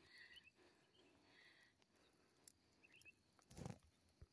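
Near silence, with a few faint high chirps scattered through it and a soft, brief lower sound shortly before the end.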